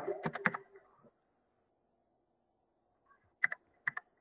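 Computer keyboard keys being typed: a quick run of keystrokes at the start, a pause, then a few more keystrokes near the end.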